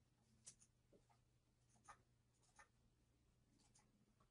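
Near silence with a few faint, irregular clicks of computer keyboard keys being typed, over a low steady hum.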